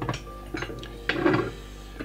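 A few light metal clinks and knocks as a steel hydraulic trolley jack is handled and one of its steel swivel castors is grasped.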